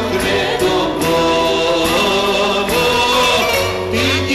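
Live rebetiko song performed by a woman and a man singing together over a small band, the voices holding long notes over a steady bass line.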